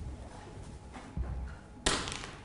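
A dropped pen hitting the floor: one sharp clack just before the end, after a soft low thump a little past the middle.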